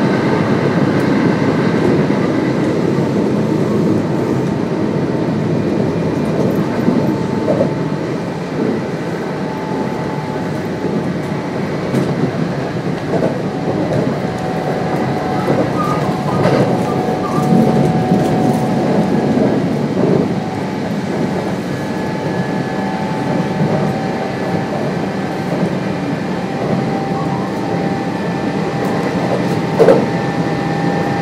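A Kintetsu 1026 series electric train with Hitachi GTO-VVVF drive, running at speed between stations and heard from inside the car. The wheels rumble on the rails throughout, with steady whining tones from the traction motors that come and go.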